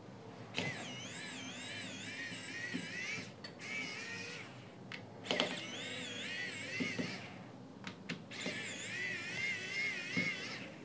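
Electric precision screwdriver whining as it backs out small screws from the speaker's plastic top plate. The whine wavers up and down in pitch as it runs. It stops and starts about four times, with a few short clicks in the gaps.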